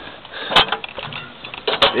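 Two sharp knocks, the first about half a second in and the second near the end, with rustling handling noise between them: footfalls on a tractor's steel cab steps while climbing down, with the engine off.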